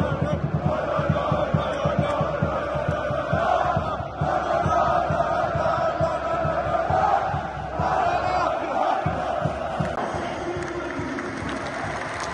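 A large crowd of Fenerbahçe football supporters chanting in unison in the stands, with a fast, low beat running underneath. The chant eases off about ten seconds in.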